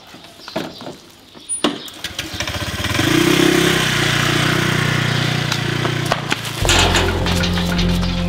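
A small motor scooter starts and pulls away. About two to three seconds in, background music with sustained low notes comes in loudly over it, and the notes shift a little after six seconds.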